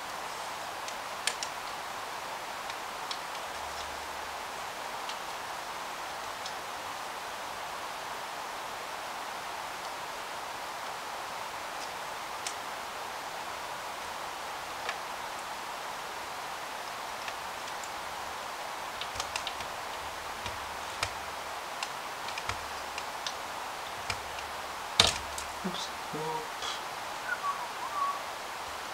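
Small plastic clicks and taps as plastic trim parts of a scale model car are handled and pressed into place, scattered and sparse over a steady hiss, with one much louder sharp click near the end.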